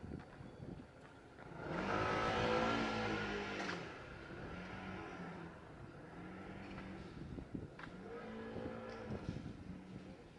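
A motor vehicle passing close by, loudest from about two seconds in, its engine pitch sliding down as it goes past. Then the engine pitch rises and falls several times as it pulls away through the gears.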